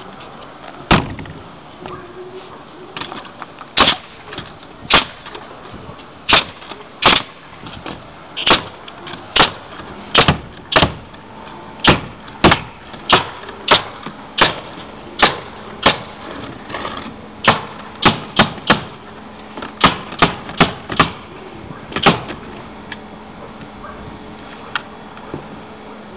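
Pneumatic roofing nail gun firing nails into 5/8-inch OSB roof decking: a long, irregular run of sharp shots, about one to two a second, some in quick pairs.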